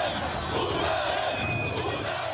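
A large crowd shouting, many voices at once.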